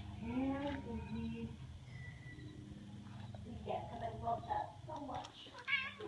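A domestic cat meows once, about half a second in, with a call that rises and then falls in pitch. A steady low hum runs underneath.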